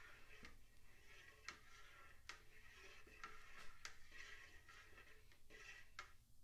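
Faint, irregular ticks and light knocks of a long plastic spoon stirring liquid in a plastic bucket.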